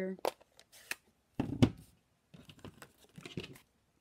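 A plastic stamp ink pad case being picked up, opened and set down on a craft table: a few light clicks, a sharp knock about one and a half seconds in, then soft rustling and scraping.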